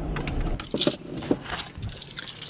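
A car's engine running with a low rumble that cuts off about half a second in, followed by a few sharp clicks and knocks of handling inside the car.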